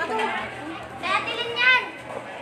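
Several people's voices talking over one another, with a loud high-pitched shout about a second in.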